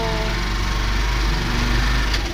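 A motorized tricycle's small engine running steadily with a low rumble, heard from inside its sidecar while riding.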